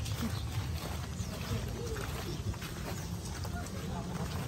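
Footsteps of several people walking on gravel and dirt, with faint voices in the background over a steady low rumble.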